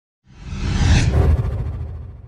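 Logo-sting whoosh sound effect with a low rumble underneath. It swells up a quarter second in, peaks about a second in, then fades away.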